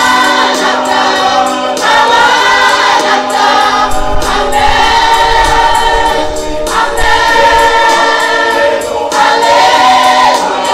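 Gospel church choir of mixed men's and women's voices singing in harmony, holding chords that change every second or two.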